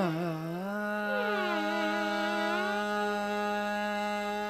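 Carnatic female voice with violin accompaniment: an ornamented phrase bending in pitch settles, about a second in, onto a long held note. A second melodic line glides down and back up over the held note.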